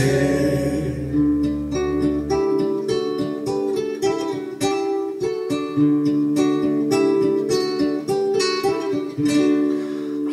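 Instrumental break in a country backing track: a plucked guitar picks out a melody, several notes a second. A low held bass note drops out about two and a half seconds in.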